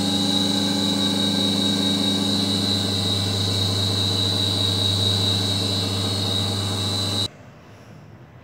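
Electric motor and pump of a Coriolis-force demonstration model running steadily, with a low hum and a high whine, as it drives the rotating disc and its liquid jets. It cuts off suddenly about seven seconds in.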